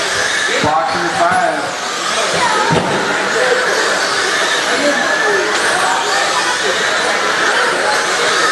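Several radio-controlled dirt-oval race cars running laps, their electric motors whining and rising and falling in pitch as they pass, with voices talking over them.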